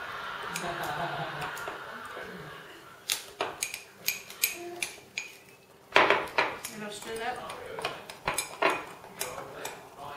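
Metal spoons tapping, clinking and scraping against ceramic mugs as cake batter is stirred. A run of sharp clinks starts about three seconds in and is loudest around six seconds.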